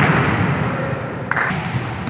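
A volleyball struck hard at the net in a spike or block: one sharp smack at the start, followed by loud echoing noise in the indoor hall.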